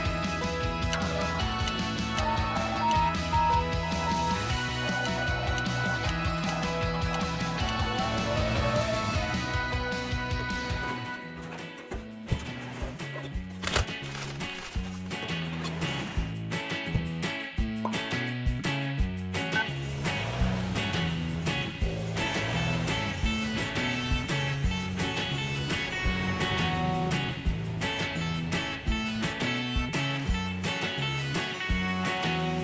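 Background music: sustained notes over a steady bass line, changing about eleven seconds in to shorter notes in a regular rhythm.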